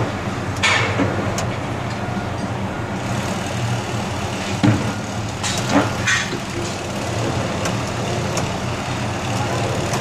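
Heavy construction machinery running with a steady low drone, with a few short hissing bursts and a sharp knock about halfway through.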